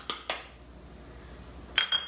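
Small ceramic ramekins clinking: three light taps at the start, then a sharper clink with a short ring near the end.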